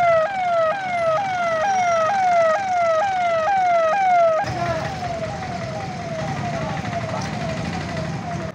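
Electronic police siren sounding from a police jeep's roof-mounted horn loudspeakers, a quick repeating falling wail about two cycles a second. About four seconds in it turns fainter, with street noise under it.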